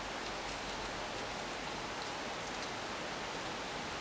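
Steady, even hiss of background noise, with no distinct paper-crease or handling sounds standing out.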